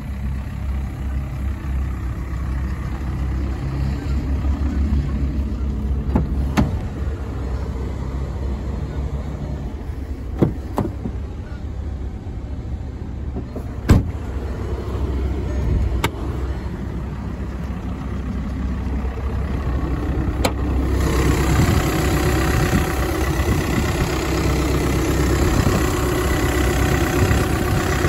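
Volkswagen Passat's 2.0 TDI four-cylinder turbodiesel idling steadily, with a handful of sharp clicks and knocks from handling the car. The engine sound turns louder and rougher over the last several seconds.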